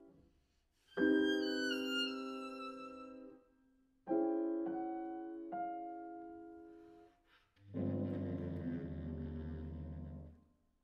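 Steinway grand piano chords struck twice and left to ring and decay. About eight seconds in, a low, held bass clarinet note enters at an even level.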